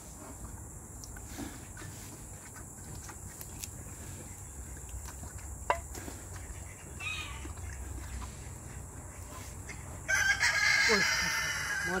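A rooster crowing, one loud drawn-out crow lasting about two seconds near the end. Before it there is only a low steady background and a single sharp click about halfway through.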